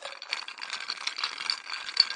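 Dense, rapid rattling, a steady stream of small sharp hits with uneven louder peaks.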